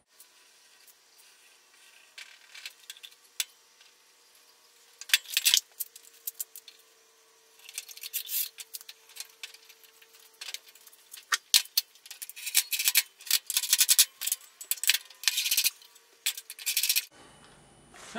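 One-handed ratcheting bar clamps being squeezed tight on freshly glued boards: runs of rapid clicks about five seconds in, again around eight seconds, and a long busy run through the last six seconds.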